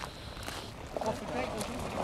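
Faint voices in the background over a steady low rumble of wind on the microphone.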